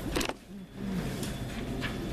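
A single sharp knock just after the start, followed by a brief dip and then a steady murmur of room noise with faint voices.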